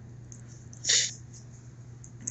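A single short breathy sniff from a man, about a second in, over a low steady hum.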